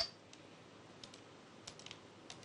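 A sharp click at the start, then a few faint scattered clicks: Go stones being placed and handled on the commentary demonstration board.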